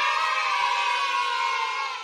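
Cheering sound effect: a group of voices giving one long, held cheer that fades out near the end, marking a winning bet.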